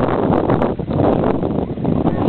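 Pool water sloshing and splashing right against a camera held at the water's surface: a dense, steady rushing noise.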